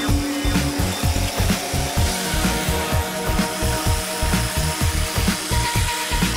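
Makita jigsaw cutting through a foam-core tile backer board, its blade making a steady rasping saw noise, over background music with a steady beat.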